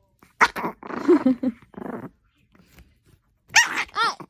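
Long-haired Chihuahua barking sharply about half a second in, growling for about a second, then giving two more quick barks near the end. It is snapping at a hand that reaches toward the chew it is holding: food guarding.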